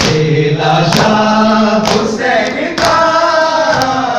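Group of men chanting a noha (Shia lament) in unison, with sharp hand slaps on the chest (matam) beating about once a second.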